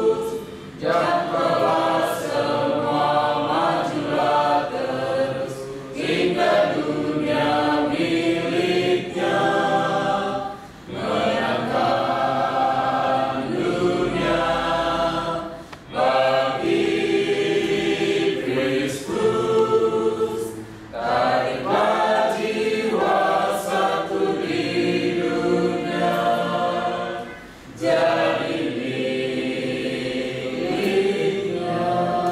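A small group of people singing a hymn together, line by line, with short breaks for breath between phrases about every five seconds.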